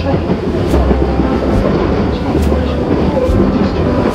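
Passenger train running, heard from inside the carriage: a steady rumble with regular clicks about once a second.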